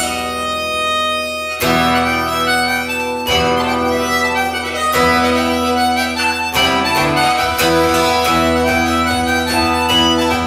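Acoustic guitar strummed with a harmonica playing long held notes over it; the fuller sound comes in about a second and a half in.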